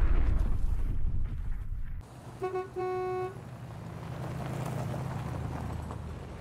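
A deep rumbling whoosh that cuts off about two seconds in, then a car horn honking twice, a short toot followed by a longer one, over a low steady hum.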